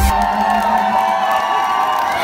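Dance-floor crowd cheering and shouting together while the music's bass drops out at the start, leaving mostly voices over a thin trace of music.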